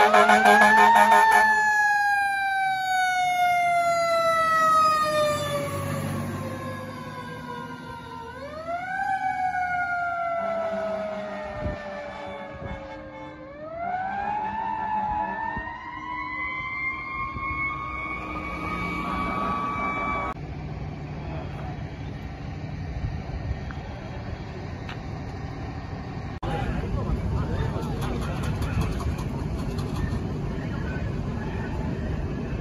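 Fire engine siren with a loud horn blast at the start. The siren falls slowly in pitch, rises sharply twice, then holds high and cuts off about two-thirds of the way through.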